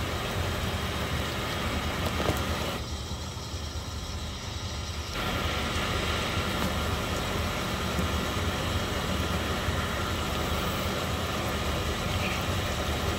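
Steady hum of running machine-shop machinery. About three seconds in it turns duller and quieter for roughly two seconds, then comes back as before.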